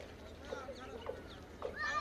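Women's voices in quiet conversation: short, broken phrases, with a louder voice coming in near the end.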